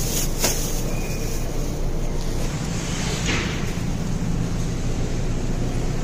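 Warehouse-store ambience: a steady low hum from the refrigerated cases and store, with a few light clicks and rustles of a plastic-wrapped chicken package being handled near the start and a short hiss about three seconds in.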